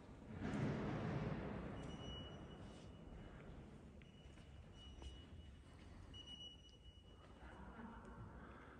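Quiet ambience of a large stone church interior, with a dull noise about half a second in that dies away slowly in the long echo, and a few faint high tones later on.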